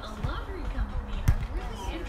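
A beach volleyball being hit: one sharp thump about a second in, heard over background talk.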